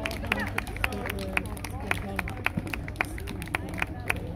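People's voices talking in the background, over a low hum, cut by frequent sharp, irregular taps or clicks, several a second.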